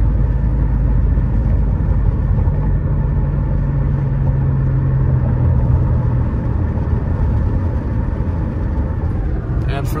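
Steady low rumble of a car's tyres and engine heard from inside the cabin while driving at road speed, with the engine hum a little stronger for a few seconds in the middle.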